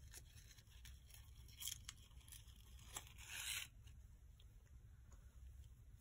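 Faint rustling of a sheer mesh ribbon pulled through slits in a paper card and handled against it, with a short rustle about two seconds in and a longer one a little after three seconds.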